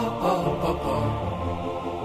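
A cappella vocal song: voices chanting in harmony over sustained low hummed notes, with no instruments.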